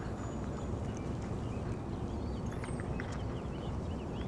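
A horse's hoofbeats, muffled in soft, worked arena dirt, as it lopes through a pole-bending pattern, over a steady low rumble. A few short, faint high chirps are heard.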